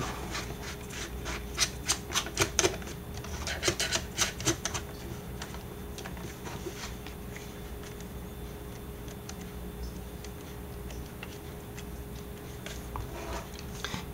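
Canon BG-E9 battery grip being screwed onto a Canon 60D by its thumbwheel: a run of quick, sharp clicks over the first five seconds or so, then quieter rubbing and handling of the plastic grip and camera body.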